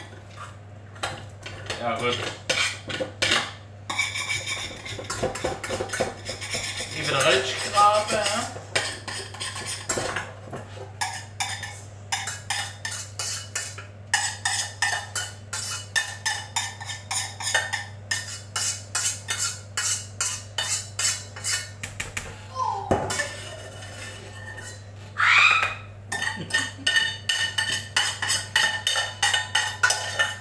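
Metal cooking pot and utensils clattering, metal knocking on metal. For much of the time the knocks come in a fairly regular run of about two to three a second.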